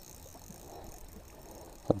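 Faint steady rush of fast-flowing river water around a small boat.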